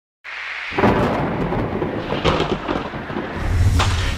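Cinematic thunder-like rumble sound effect with sharp crackles, building to a deep low boom near the end.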